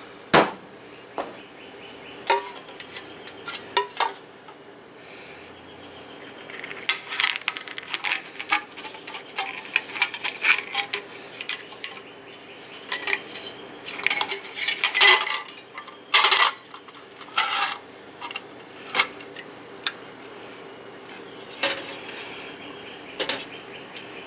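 Small metal carburetor parts clicking and clinking as they are picked up and set into the parts basket of a carburetor-cleaner dip can. The clicks come irregularly, in quick clusters that are busiest in the middle.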